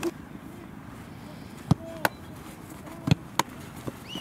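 A football being kicked and hitting a goalkeeper's gloves: four sharp thuds in two close pairs, the first pair a little under two seconds in and the second a little after three seconds in.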